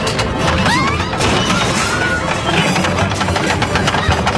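Mahjong tiles clattering and scattering, with knocks and crashes of tableware and furniture as the room is shaken, over dramatic background music.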